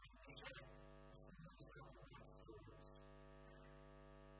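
Near silence with a steady electrical mains hum, joined by a few faint, brief scattered sounds in the first three seconds.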